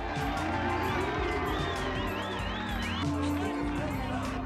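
A pop-rock song performed live: a male voice singing over drums and bass, with a crowd cheering.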